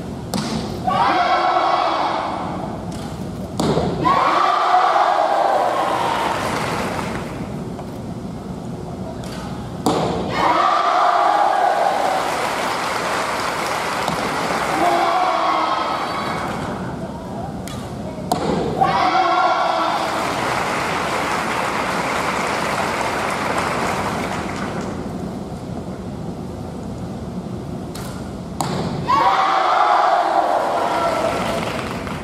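Kyudo arrows hitting the target with sharp knocks, about five times, each followed by a burst of shouting voices and applause from the crowd that fades over a few seconds.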